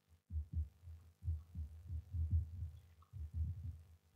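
Soft, irregular low thumps of footsteps in sandals on a wooden floor, over a faint steady hum.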